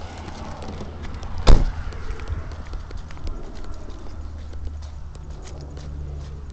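Handling noise of a phone held close to the face: scattered small clicks and rubbing over a low rumble, with one sharp loud knock about one and a half seconds in.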